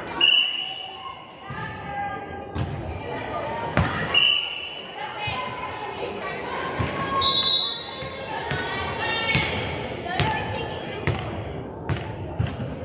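Volleyballs being struck and bouncing on a hardwood gym floor: repeated sharp knocks that echo around a large hall, mixed with the voices of players and spectators calling out.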